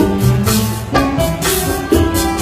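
Live Puerto Rican jíbaro music played without singing: a cuatro and guitar play a melody over shaken and scraped hand percussion with a steady beat.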